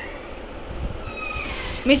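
Low room noise with a faint thin high tone about halfway in. Just before the end a woman begins calling out in a high, sing-song voice.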